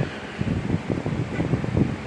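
Handling noise on a phone's microphone: irregular low rustling and soft bumps as the phone is held close to the face and moved.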